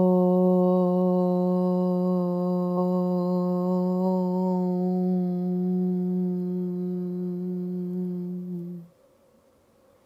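A woman's voice chanting a single long om on one steady low pitch, growing duller about halfway as it closes into a hum. It stops about nine seconds in.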